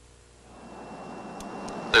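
Near silence, then the steady noise of an airliner cabin in flight fading in, with a faint steady high tone and two light clicks near the end.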